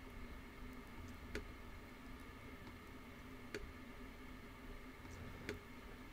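A few faint computer mouse clicks, spaced a second or two apart, over low room tone.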